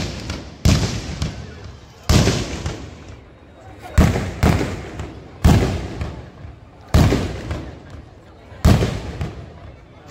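Fireworks going off: seven sharp bangs at uneven gaps of half a second to two seconds, each dying away over about a second.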